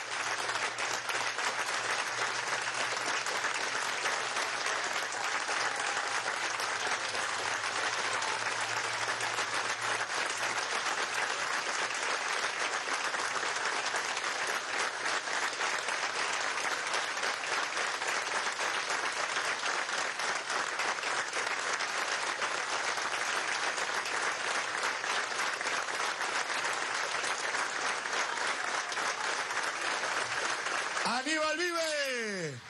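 A large crowd clapping steadily and without a break, a sustained minute of applause given as a tribute to someone who has died.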